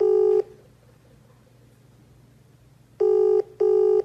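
WhatsApp outgoing-call ringing tone: short, steady beeps in pairs, repeating about every three seconds while the call rings unanswered. One beep ends just after the start and a pair comes about three seconds in.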